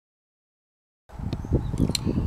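Silence for about the first second, then outdoor background noise cuts in suddenly: a low rumble with a few sharp clicks, the loudest a little before the end.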